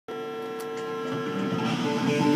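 Electric guitar holding one long sustained note that starts abruptly, with further notes coming in near the end as the playing begins.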